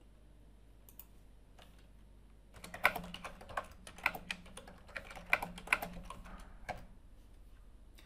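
Typing a short sentence on a computer keyboard: a couple of lone key clicks, then a quick, uneven run of key clicks from about two and a half seconds in, stopping shortly before the end.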